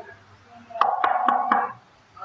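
Knuckles knocking four times in quick succession on an electric scooter's body, about a quarter second apart past the middle, with a steady tone held under the knocks.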